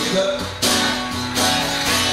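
Acoustic guitar being strummed, sustained chords with two strong strums less than a second apart.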